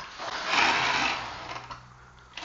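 Festool plunge track saw sliding along its aluminium guide rail, not running: a light click, then a rubbing rasp that fades out about a second and a half in.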